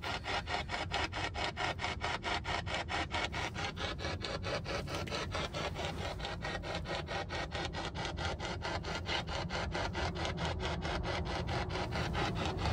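Ghost-hunting spirit box sweeping through radio frequencies: a rapid, even chopping of static, about five or six bursts a second.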